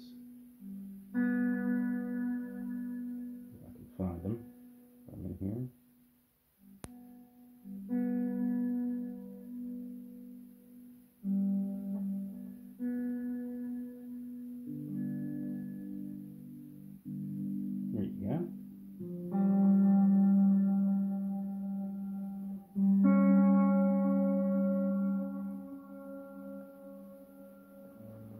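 Line 6 Variax modelling guitar played through a Helix: a series of strummed chords, each left to ring for a second or several before the next, the last few the loudest.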